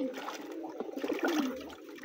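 Water poured from a plastic basin splashing into a shallow metal pan, the pour dying away near the end.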